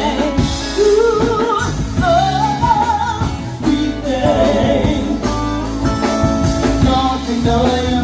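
Live band playing through a PA: a woman singing lead with a wavering, vibrato-laden melody over electric bass, electric guitar and a drum kit, with a steady rhythm.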